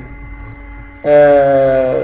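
A man's voice holding a long, steady 'uhh' hesitation sound. It starts about halfway through and lasts about a second at one pitch.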